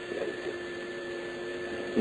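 Steady background hum and hiss of an old lecture recording during a pause in the talk, with a low constant tone and a faint high whine.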